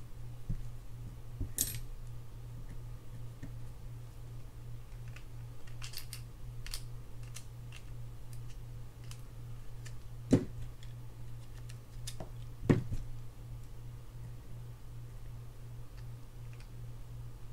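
Small clicks and taps of a mini screwdriver and metal parts being worked on a Shimano FX4000FA spinning reel as a screw is driven in. Three louder clicks stand out: one near the start, one about ten seconds in and one about twelve and a half seconds in. A steady low hum runs underneath.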